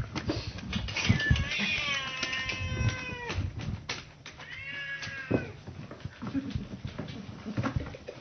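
A domestic cat meowing twice: a long drawn-out call starting about a second in, then a shorter rising-and-falling one about five seconds in. Scattered light knocks are heard between the calls.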